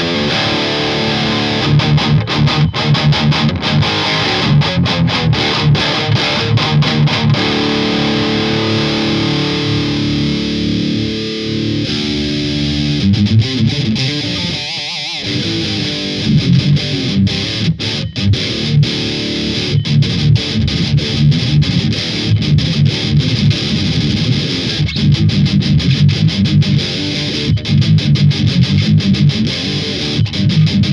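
Distorted electric guitar through a Randall RH100 solid-state amplifier head, miked on a Celestion Vintage 30 speaker: fast, choppy riffing with a stretch of held chords in the middle and a brief break about 15 seconds in.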